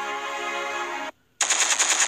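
A held musical note cuts off about a second in; after a short gap, a rapid burst of machine-gun fire starts, about a dozen shots a second.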